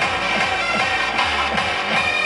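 Hard dance electronic music played live over a festival PA: a fast kick drum beat under dense synths, with the kick dropping out briefly a little after a second in while a low bass note holds.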